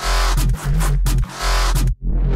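A bass track playing back: loud music with a very heavy, deep sub-bass and a pitched bass line, dipping briefly a little past the middle.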